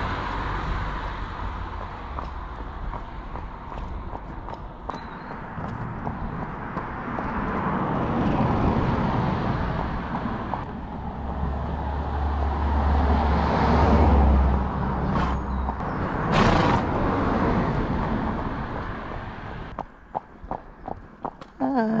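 Road traffic passing close by, several cars in turn, each swelling and fading away. A deep engine hum runs through the middle, and there is a brief sharp rush about two-thirds of the way in.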